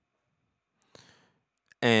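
A pause in a man's talk into a close microphone: near silence, broken about halfway by a faint click and breath, then his voice comes back near the end.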